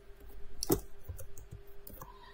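A few scattered clicks of laptop keys being pressed while code is typed, the sharpest about two-thirds of a second in, over a faint steady hum.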